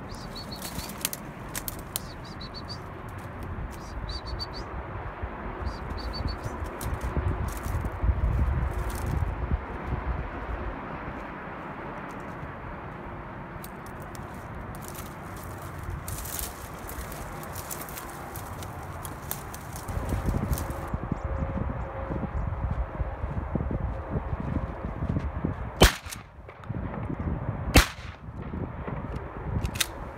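Two shotgun shots fired at doves, about two seconds apart near the end. They are sharp and much louder than the uneven low rumble that runs underneath.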